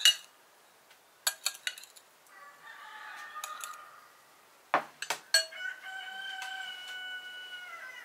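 A metal spoon clinking sharply against a cut-glass bowl several times as crumbly filling is scooped out, and a rooster crowing: a quieter crow a couple of seconds in and one long crow in the second half.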